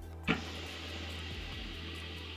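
A long, steady hiss of air being drawn through a shisha hose during an inhale, starting sharply just after the beginning, over background music with a steady bass.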